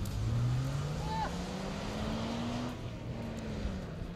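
Four-wheel-drive SUV's engine revving as the vehicle drives away across sand: its note rises steadily for nearly three seconds, then drops and fades near the end.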